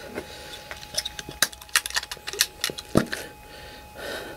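Clear hard-plastic action-camera case and camera handled in the hands: a run of short sharp plastic clicks and clacks, with the sharpest one near the end.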